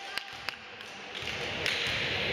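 Basketball dribbled on a gym floor: two sharp bounces about a third of a second apart in the first half. A steady hiss of background noise from the hall rises in the second half.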